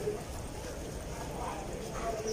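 Background chatter of a market crowd: faint voices over a steady low rumble, with a few soft knocks.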